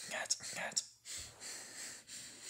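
A person whispering: a few short whispered syllables, then a longer steady hiss in the second half.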